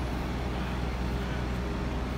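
Steady street traffic noise: an even, low rumble of passing cars with no distinct events.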